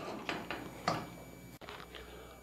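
A few faint scrapes and knocks of a wooden spoon working a thick ball of cassava dough in a stainless steel saucepan, mostly in the first second; the dough is coming away from the pan's bottom, the sign it is cooked.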